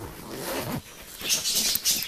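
Zipper on a black fabric breast-pump backpack being pulled open in two pulls.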